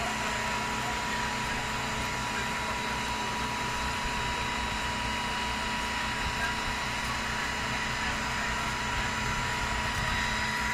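Fire trucks' engines running steadily: a constant mechanical drone with a thin, steady whine over it.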